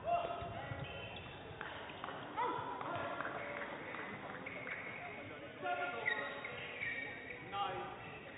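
Court shoes squeaking on an indoor sports-hall floor: short scattered squeaks at varying pitch, echoing in a large hall, with a few faint knocks.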